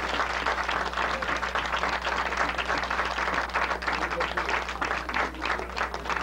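Audience applauding, many hands clapping at once, with a steady low hum beneath.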